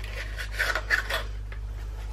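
A small kraft cardboard box being opened by hand: cardboard rubbing and scraping, with a few light clicks, loudest between about half a second and a second and a quarter in.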